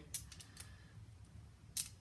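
Light metallic clicks and clinks of a steel crow's-foot wrench and its accessory being handled and fitted together. There is a click with a brief ring just after the start, a few small ticks, and a sharper clink near the end.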